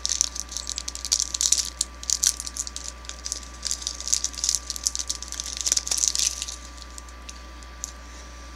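A Cadbury Wispa bar's wrapper crinkling as it is peeled open by hand: a quick, irregular run of small crackles that thins out near the end.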